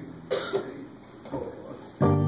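A person coughing about a third of a second in, with a softer second sound about a second later, over a faint steady hum.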